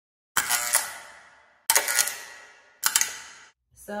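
Three sudden clicking hits, evenly spaced about a second and a quarter apart, each a quick cluster of sharp clicks that rings out and fades over about a second.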